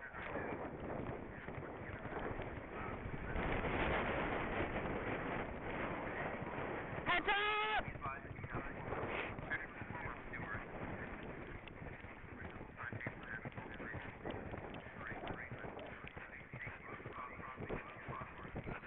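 Horse galloping across turf, its hoofbeats buried in a steady rush of wind on a rider-mounted camera. A short pitched call sounds once, about seven seconds in.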